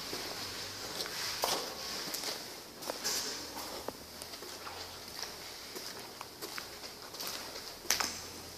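Footsteps on a concrete floor with scattered light ticks, over a faint steady room hum.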